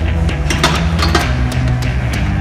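Loud background hard rock music with a steady drum beat.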